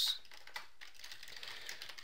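Computer keyboard being typed: a string of faint, irregular key clicks, with one sharper keystroke at the start.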